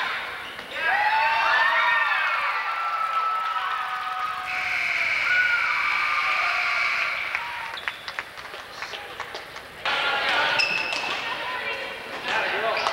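Spectators shouting and cheering in an echoing gym, with one long high held call near the middle. Later a basketball bounces on the hardwood court among short sneaker squeaks.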